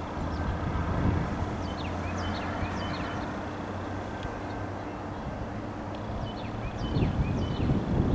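Distant GE diesel locomotives of an approaching freight train, a steady low engine hum and rumble. Near the end, wind buffets the microphone.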